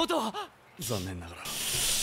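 Anime dialogue in Japanese: a young man's voice asks after his sister, followed by another line of speech. Then a steady hiss of noise fills the last half second or so.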